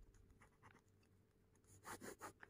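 Near silence, then a ballpoint pen starting to write on notebook paper near the end, a few faint short strokes.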